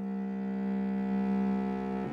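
Cello holding one long bowed note that swells slightly and then eases, in a chamber-music performance.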